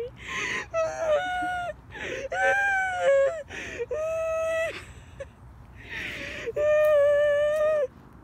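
A child screaming, four long high screams with sharp gasping breaths between them, as if in fright.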